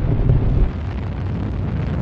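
Proton-M rocket engines heard as a steady low rumble that eases slightly less than a second in.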